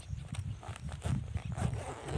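Wind buffeting the microphone in an uneven low rumble, with light rustling and ticks as a backpack is rummaged through.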